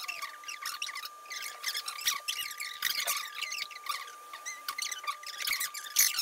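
Fast-forwarded talk: voices sped up into rapid, high-pitched squeaky chatter, with a steady high tone running underneath.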